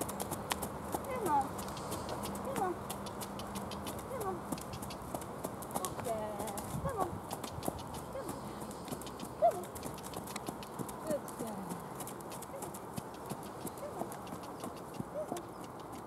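Piebald cob pony trotting on a sand arena: a steady run of soft hoofbeats, with short falling calls scattered over it.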